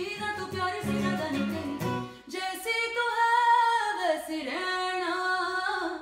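A woman singing with an acoustic guitar. About two seconds in, the strumming thins out and her voice carries long, held notes that waver and bend in pitch.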